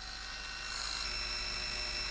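Small electric facial cleansing brush running: its little motor spins the round brush head with a steady, high-pitched whine.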